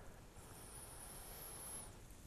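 A faint, drawn-out sniff through the nose, breathing in the scent from the neck of a small glass aftershave bottle.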